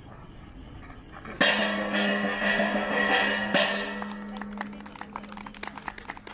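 Music begins with a ringing, gong-like strike about a second and a half in. A second strike comes about two seconds later, and the tone slowly dies away. Quick light clicks follow near the end.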